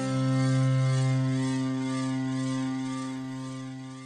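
Logic Pro X's Sculpture physical-modelling synth playing its 'Ambient Slow Bow' patch, with a mass object added to the modeled string: one sustained low bowed-string note held steady, then slowly fading over the last two seconds.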